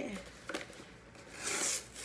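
Cardboard shipping box being pried open by hand: a small click about half a second in, then a short ripping sound of the flap or tape tearing about one and a half seconds in.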